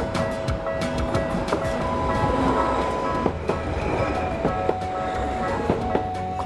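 Green Tokyu Setagaya Line tram running over a level crossing, its wheels rumbling and clicking over the rails, while the crossing's warning bell rings in a steady repeated beat.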